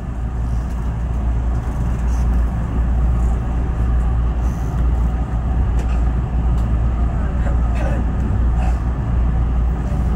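JR West 221 series electric train pulling away from a station, heard from the front of the car: a heavy low rumble of motors and wheels on rail that grows louder over the first couple of seconds, then holds steady as the train gathers speed.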